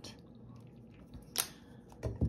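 Quiet room tone with a single sharp plastic click about one and a half seconds in: the flip-top cap of a squeeze bottle of acrylic craft paint snapping shut.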